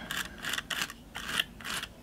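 Palette knife scraping glitter paste across a stencil on a card, in about five short strokes.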